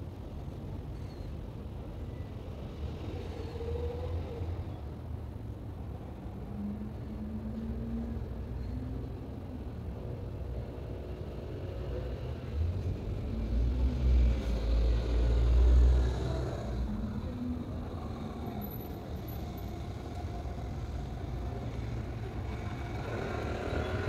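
Street traffic noise: a steady low rumble of road vehicles, with one vehicle passing louder about two-thirds of the way through.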